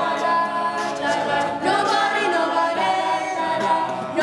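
Mixed group of teenage voices singing a cappella in harmony, holding long sustained chords.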